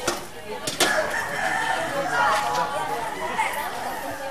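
A rooster crowing once, one long call of about a second that starts about a second in, with people talking around it. Two sharp knocks come just before it.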